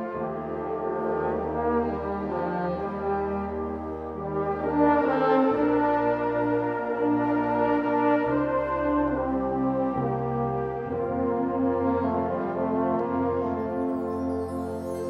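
Concert wind band playing slow, sustained full chords over low bass notes that change every second or two, swelling to a louder passage about five seconds in.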